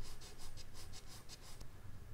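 Charcoal stick scratching across medium-surface drawing paper in quick short hatching strokes, about five a second, stopping a little before the end.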